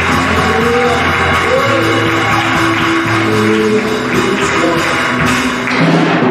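Worship music with long held chords over a low, sustained bass line, and a short sharp hit just before the end.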